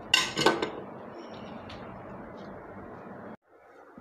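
A metal screwdriver clinks against a glass tabletop at the start. Low, steady room noise follows and cuts off suddenly near the end.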